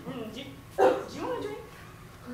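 A person's short, sudden vocal cry about a second in, its pitch sliding down, with fainter bits of voice around it.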